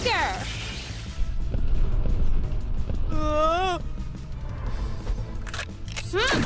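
Cartoon background music with a steady low underscore, a hissing whoosh effect in the first second, and a short wordless vocal call that rises and falls about three seconds in.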